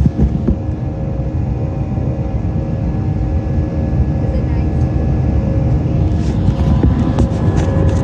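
Airbus A319 cabin noise in flight: a steady low rumble of the jet engines and airflow with a few steady whining tones over it, heard at a window seat. A few light clicks and knocks near the start and again towards the end.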